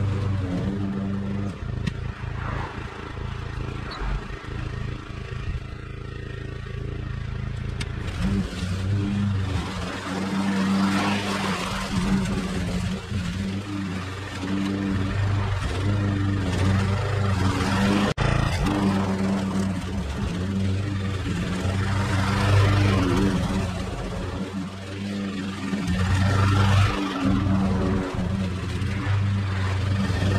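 Petrol push mower running as it cuts long, dry grass, its engine note steady but its loudness rising and falling over several seconds as it works back and forth through the thick, flattened grass.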